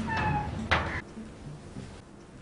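A cat meowing once, briefly, followed by a sharp click.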